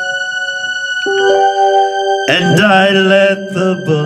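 Electric keyboard playing held chords, changing chord about a second in. Just past two seconds in, a louder, wavering melody line comes in over the chords for about a second.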